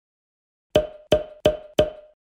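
Four short, evenly spaced wood-block-like knocks on one pitch, about a third of a second apart, starting just under a second in: a sound effect for the end-card icons appearing one by one.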